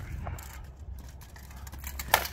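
Steady low wind rumble on the microphone, with one faint tap about a quarter second in; no blade clash.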